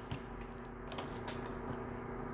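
A few faint, light clicks of small denture parts being handled on a workbench, over a steady low electrical hum.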